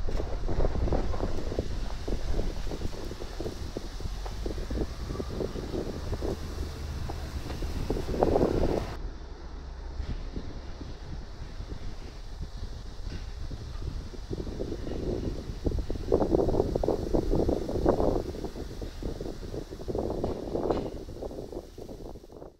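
Wind noise on the microphone of a Sony Xperia 1 V smartphone recording video outdoors with its intelligent wind filter switched off, while the person filming runs. It is a continuous low rumble with uneven louder gusts, one about eight seconds in and a longer stretch near the end.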